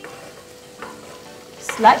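Chicken pieces frying softly in a pan on a gas burner, with a wooden spatula stirring them. A voice starts near the end.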